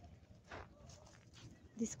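Faint footsteps on a dry dirt path with loose stones and dry grass, a few soft crunches and knocks.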